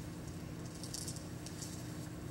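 Faint rustling and light clinking as the bag holding the pieces of the broken prop heart is handled: a few short, crisp rattles, mostly around a second in, over a steady low hum.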